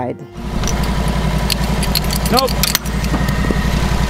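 Sawmill engine running steadily, setting in abruptly just after the start, with scattered light clicks and knocks over it.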